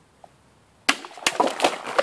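A sharp crack about a second in as a sword cuts through water-filled plastic bottles, followed by a quick run of further cracks and clatter as the cut pieces are struck and fall.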